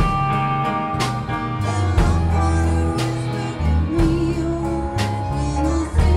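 Live rock band playing: a Rickenbacker electric bass plays heavy held notes under drum-kit hits about once a second. A singer holds wavering notes over it.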